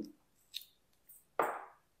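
A short pause in a woman's talking: a faint click about half a second in, then a brief breath just before she speaks again.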